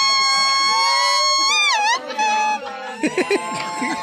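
Leaf whistle: a green leaf held against the lips and blown, giving a high, reedy held note that wavers quickly down and back about one and a half seconds in, then settles on a lower note. Laughter breaks in near the end.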